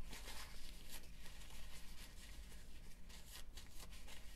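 Faint rustling and rubbing of a paper towel wiping a measuring spoon clean of dry-ingredient residue, in many short irregular strokes.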